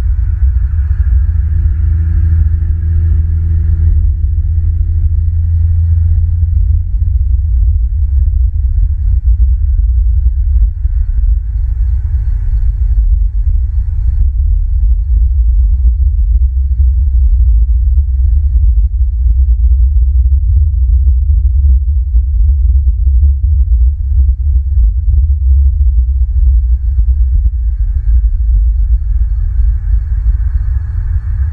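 A loud, steady low rumble on the outdoor nest-cam microphone, with a faint higher hiss that drifts in and out.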